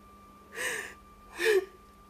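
A woman gasping twice, two short sobbing breaths of anguish, in the middle of a voice-acted scene of weeping distress.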